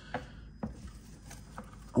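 Leafy primrose cuttings rustling and knocking lightly against a plastic container as they are handled, with a couple of soft clicks in the first second.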